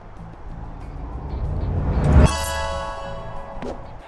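Edited-in music sting: a rising swell builds for about two seconds, then a bright sustained chord hits about halfway through and fades away.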